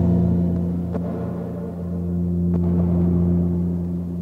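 Ambient music made from a deteriorating magnetic tape loop: sustained low, gong-like tones held steady, with a couple of faint crackles where the worn tape breaks up.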